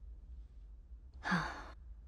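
A single breathy sigh from a person, a short exhale lasting about half a second, a little past one second in.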